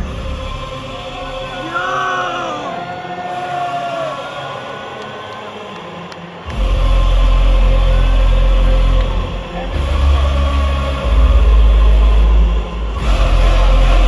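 Live concert music over a large PA, recorded from within the crowd. For the first half the music is thin and quiet, with a few whoops or voice glides. About six and a half seconds in, loud, heavy bass comes in and carries on, dipping briefly twice.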